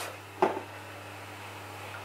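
Quiet room tone with a steady low hum, and one short knock about half a second in.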